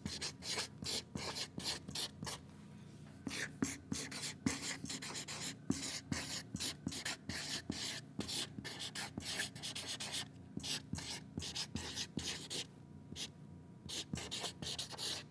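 Felt-tip marker writing on chart paper: quick, irregular scratching strokes, letter by letter, with short pauses between words, one about three seconds in and another near the end.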